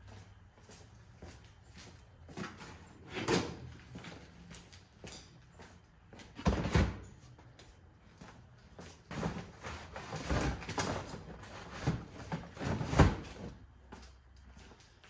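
Plastic storage totes being set down and pushed into place on a van's rear cargo floor: a series of separate thuds and scrapes, the loudest near the end.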